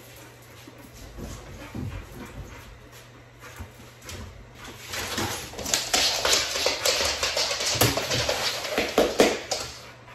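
American bully dog scrambling across a wooden floor while playing tug: claws skittering and paws thumping in quick, irregular knocks. The knocks are sparse at first and become busy and loudest over the last five seconds.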